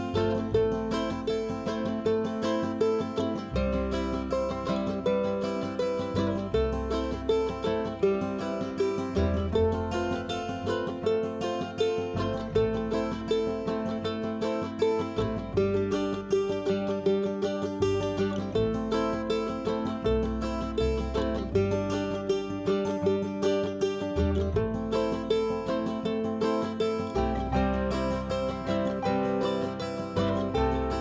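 Background instrumental music of plucked strings, with quick picked notes over a bass line that changes every second or two.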